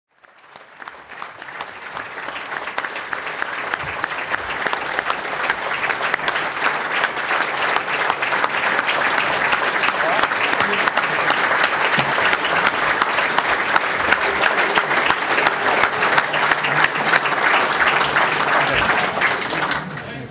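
Large audience applauding, a dense patter of many hands clapping that builds over the first few seconds, then holds steady before falling away at the very end.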